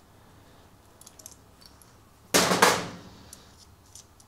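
Two sharp metallic clanks about a third of a second apart with a brief ring, like a hand tool set down on a metal workbench, after a few faint clicks of small metal parts.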